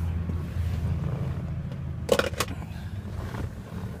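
A steady low hum, with two sharp knocks about two seconds in, a third of a second apart, as someone climbs into the driver's seat of a car.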